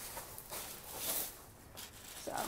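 Faint rustling and scraping from a hand scoop working in pea gravel and a plastic trash bag being handled, swelling about a second in.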